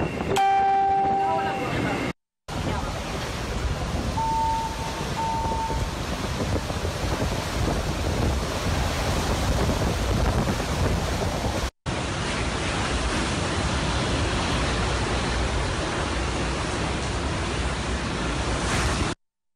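Hurricane-force wind and driving rain from Hurricane Maria, blasting into a phone microphone as a steady, loud rush. The sound cuts out abruptly twice as the footage changes between recordings. A short pitched tone sounds just after the start, and two brief beeps come about four seconds in.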